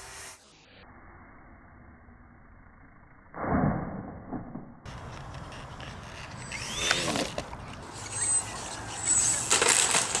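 Outdoor recordings of small radio-controlled planes: steady microphone noise, a sudden loud noise about three and a half seconds in, and later a small electric motor's whine gliding up and down.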